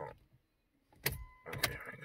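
A sharp click, a short steady electronic beep, then a second click about half a second after the first.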